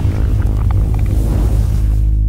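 Music and sound effects of a studio logo sting: a loud, deep bass rumble under a dense, noisy musical texture, with a hiss building in the highs in the second half.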